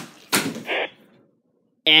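A thrown plastic back scratcher strikes with one sharp smack, followed by a brief rattling clatter.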